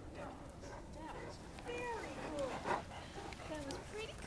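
A person's voice in short, high, sing-song phrases whose pitch swoops up and down, with a brief sharp louder sound a little past halfway.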